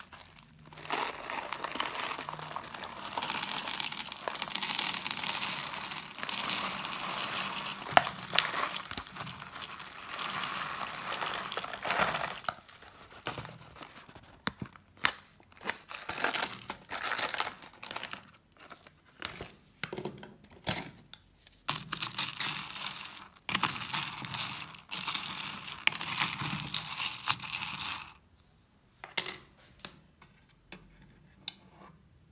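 A plastic bag of hard wax beads crinkling while the beads pour and rattle into the wax warmer's metal pot, in two long pours with scattered short clatters between them. It stops about two seconds before the end, followed by a single click.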